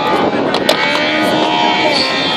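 Rally car engine running as a steady drone with a slowly shifting pitch, heard over the hubbub of a roadside crowd, with a sharp crack a little over half a second in.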